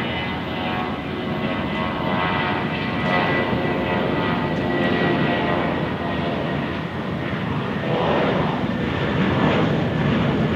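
Airbus A320 twin jet engines at takeoff thrust as the airliner runs down the runway and lifts off: a steady, loud roar with a high whining tone riding on it, growing slightly louder partway through.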